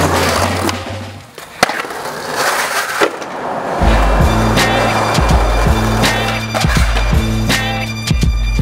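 Skateboard on stone paving: a sharp pop about one and a half seconds in, the wheels rolling, and a knock near three seconds in. Music with a bass line plays at the start and comes back in for the second half.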